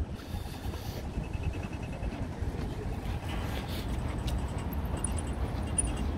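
City street traffic, a steady low rumble of passing cars, with a faint rapid ticking for a couple of seconds in the middle.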